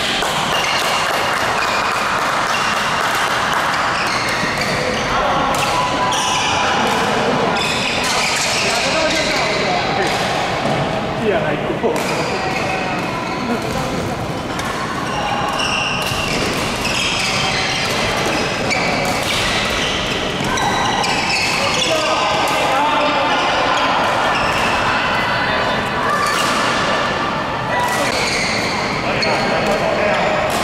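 Badminton rackets striking a shuttlecock during a rally: repeated short, sharp pops at irregular intervals, with voices in a large sports hall around them.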